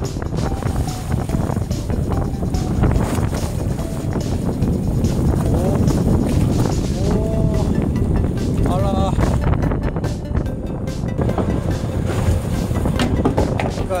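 Steady low rumble of a small fishing boat's engine at sea, with wind buffeting the microphone.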